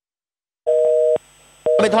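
A steady two-note beep sounds twice, about half a second each with a short gap between, then street noise and voices come in near the end.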